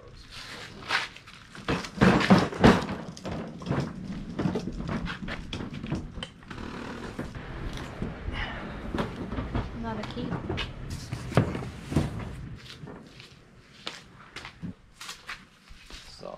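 Plastic bins, boxes and their contents being handled: repeated knocks, clatter and rustling as lids and items are moved and set down, with low, indistinct talk at times.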